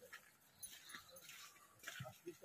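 Near silence, with a few faint, brief crackles of footsteps in forest leaf litter.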